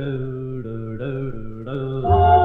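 A 1953 doo-wop record's intro: a vocal group holding wordless harmony chords that shift several times.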